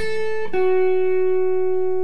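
Clean electric guitar, a Fender Stratocaster, picking two single notes. A short higher note comes first, then about half a second in a lower note that rings out steadily.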